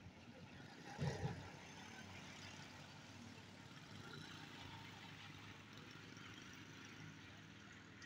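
Faint vehicle engines running steadily: the red Al-Ghazi tractor and a motorcycle riding past about four seconds in. A short low double thump, the loudest sound, comes about a second in.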